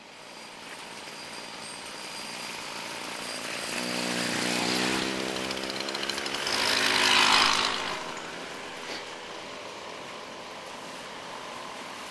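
Small two-stroke auxiliary engines of motorized bicycles running as riders pass close by one after another. The sound builds to its loudest about seven seconds in, then fades.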